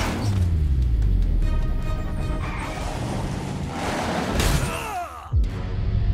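Cartoon sound effects over background music. A crash comes as one monster truck rams the other, followed by a steady low rumble. About five seconds in, a falling whistle ends in a sudden thud.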